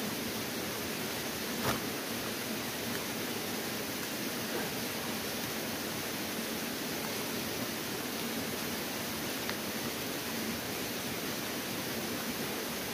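Steady, even outdoor hiss like rushing water or rain in foliage, with a single faint click about two seconds in.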